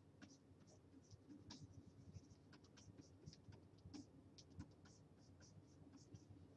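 Faint, irregular scratches of a stylus stroking across a graphics tablet as a digital painting is brushed in.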